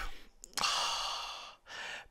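A man's long breathy sigh, about a second long, fading out.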